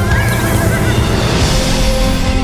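A horse whinnies in the first second, over loud orchestral film music, with hoofbeats beneath.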